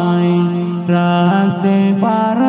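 Male voice singing a Bengali Islamic gajal without instruments, holding long notes that step between pitches, with brief breaths or dips about a second in and again near the end.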